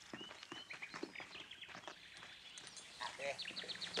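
Faint birds chirping, with light clicks and rustling. A short voice-like sound comes about three seconds in.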